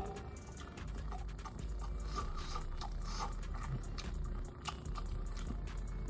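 A person chewing a bite of browned ground beef, with faint irregular mouth clicks and smacks.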